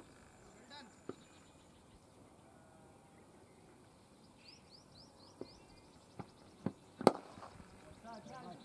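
A cricket bat strikes the ball once, a sharp crack about seven seconds in, after a few softer knocks. A bird chirps briefly a couple of seconds before it, over quiet open-air ambience.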